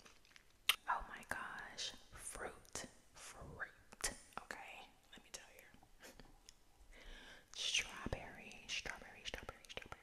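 Close-miked ASMR mouth sounds: soft whispering mixed with wet chewing and lip smacks as fruit is eaten. Many sharp mouth clicks run through it, the loudest about a second in.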